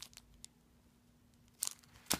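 Plastic sticker-pack packaging crinkling as it is handled: a few short rustles at the start and another about a second and a half in, with a quiet gap between.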